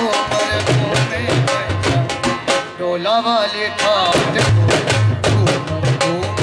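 Live Rajasthani folk music with a hand drum beating a fast, steady rhythm under a harmonium and string melody. A wavering melodic line, voice or bowed string, sounds about three seconds in.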